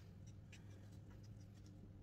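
Faint scratching of a felt-tip marker making short strokes on paper, barely above near-silent room tone.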